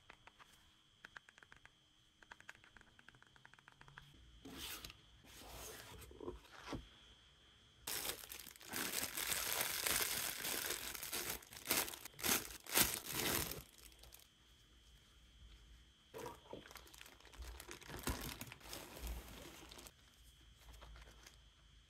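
Clear plastic packaging crinkling and tearing as gloved hands unwrap a braided cable. It is loudest in a long stretch from about eight to fourteen seconds in, with softer rustling before and after.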